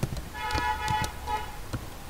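Keystrokes on a computer keyboard, with a steady pitched, horn-like tone about a second long sounding over them from about a third of a second in.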